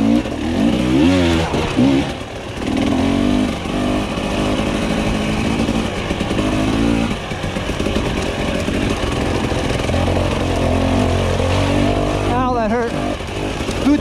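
Husqvarna TE300i two-stroke single-cylinder enduro engine being ridden, its revs rising and falling constantly with the throttle, over wind rush on the microphone. The engine is running smoothly with its idle freshly adjusted.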